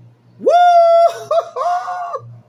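A woman's loud "Woo!" whoop that swoops up in pitch and is held for about half a second, followed by two shorter high-pitched cries.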